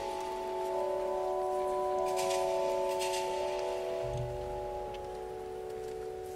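Organ holding soft, steady sustained chords, the notes changing slowly. A couple of light metallic chinks from a swinging thurible's chains come about two and three seconds in.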